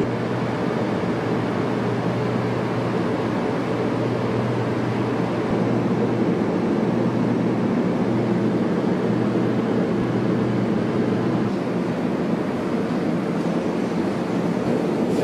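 Steady, fairly loud rumbling noise with a constant low hum underneath, machine-like and without distinct events; the hum fades near the end.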